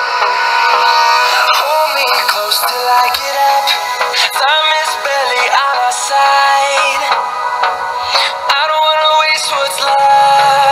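Pop song with a sung vocal playing through the Meizu Note 21 smartphone's loudspeaker, thin and with almost no bass, as a speaker test.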